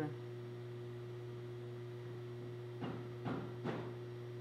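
Steady low electrical hum, with a few short faint sounds about three seconds in.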